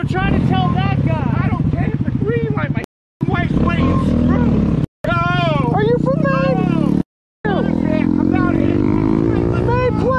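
A motorcycle engine running at idle under loud shouting voices, its pitch climbing for a couple of seconds near the end. The sound cuts out completely three times, briefly each time.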